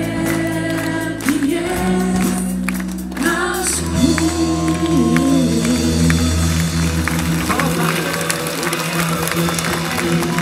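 Live worship song from a band with group singing, and the crowd clapping along.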